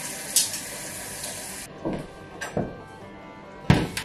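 Kitchen tap running into a sink as wool yarn is rinsed, shutting off about halfway through. A couple of light knocks follow, then a loud clunk near the end as a metal lid goes onto a stainless steel pot on the stove.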